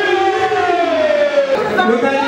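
Music with a singing voice holding one long note that slowly falls in pitch, then breaks into shorter notes near the end.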